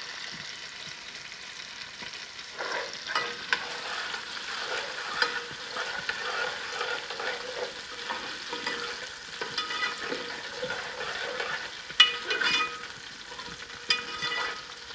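Chopped onions and garlic sizzling in hot ghee in a metal pot, stirred with a steel ladle that scrapes and knocks against the pot now and then. The loudest ladle knock comes near the end.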